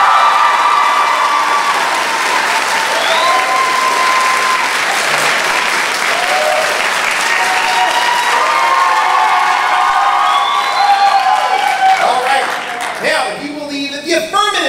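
Audience applauding and cheering, with shouts and whoops among the clapping, as an applause-meter vote for the negative side of a debate; it dies away about two seconds before the end.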